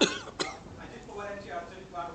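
A person coughing twice in quick succession, two sharp coughs about half a second apart, the first the louder.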